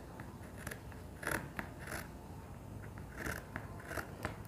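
Fabric scissors snipping through cotton fabric: several quiet, short cuts at uneven intervals as a bodice piece is trimmed along its shoulder seam allowance.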